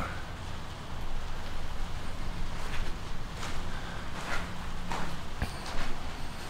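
A few soft, irregular footsteps on a dirt floor strewn with straw, over a low steady rumble.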